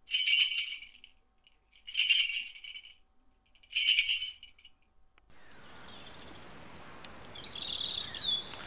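A small high-pitched bell jingling three times, each burst under a second and about two seconds apart. Then a steady outdoor hush with a bird chirping near the end.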